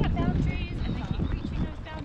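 Horses' hooves clip-clopping at a walk on a dirt trail.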